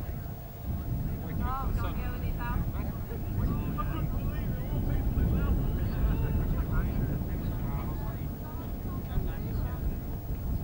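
English Electric Canberra taxiing, its Rolls-Royce Avon jet engines giving a steady low rumble that builds a little from about a second in. Voices of onlookers chatter over it.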